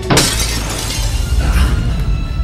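Glass-shattering sound effect, sudden at the start and dying away over about a second and a half, over music.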